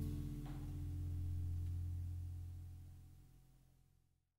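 A small jazz band's closing chord ringing out, led by a low held bass note, with a soft hit about half a second in. It fades away steadily and is gone by the end.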